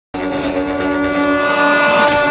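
A loud, sustained pitched drone with a steady pitch and many overtones, opening a film teaser's soundtrack.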